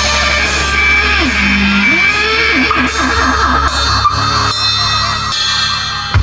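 Live rock band playing an instrumental passage: electric guitar and bass over drums, with a melodic line of sliding, bending notes and cymbal hits about once a second.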